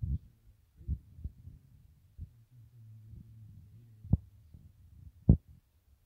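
Muffled low thumps at irregular intervals, about six of them, the loudest near the end, over a faint low hum.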